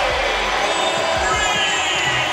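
Arena crowd cheering and roaring after a made three-pointer, with music underneath.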